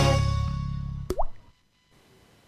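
Title-sequence music ending, its last chord fading away, then a single short rising "bloop" sound effect like a drop falling into liquid about a second in.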